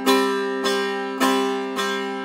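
Persian setar strings struck with the index-finger nail in alternating down and up strokes (mezrab-e rast and chap), a practice exercise for stroke strength. Four even strokes on the same note, each ringing and fading before the next.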